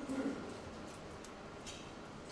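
Faint steady hiss of room tone, with no distinct event.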